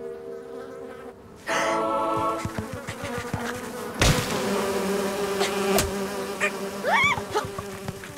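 Cartoon sound effect of bees buzzing around a hive: a steady drone. There is a sudden thump about halfway through and a few short rising squeaks near the end.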